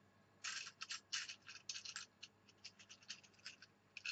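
Faint, quick scratching and rubbing sounds of a hand handling paper and card board-game pieces, a rapid string of short scrapes in the first half, thinning to a few light ticks.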